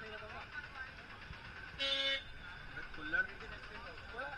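A vehicle horn gives one short toot about two seconds in, over faint background chatter.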